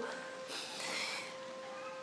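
A woman crying, a breathy sob drawn in about half a second in, over soft background music holding long steady notes.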